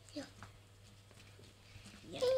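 Near silence over a steady low hum, with a few faint sticky clicks of glitter slime being squeezed between fingers in the first half-second.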